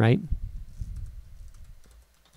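Typing on a computer keyboard: a quick run of faint key clicks as a short word is typed.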